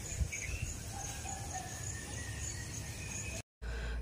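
Quiet outdoor ambience: an insect, cricket-like, chirps in a steady high pulse, with a few faint bird calls. The sound drops out briefly near the end, then a low steady hum follows.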